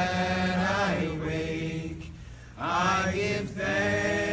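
Voices singing a chant in long held phrases, with a short pause about two seconds in before the next phrase begins.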